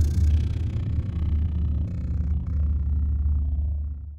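Low bass drone from a logo sting, the sustained tail after a whoosh. It holds steady and then fades out near the end.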